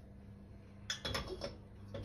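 Stainless steel saucepan being tilted to swirl oil and set back down on a gas burner's grate: a short cluster of metal knocks and scrapes about a second in, over a faint steady hum.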